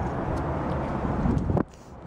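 Wind buffeting the camera microphone as a low, steady rumble that cuts off suddenly near the end.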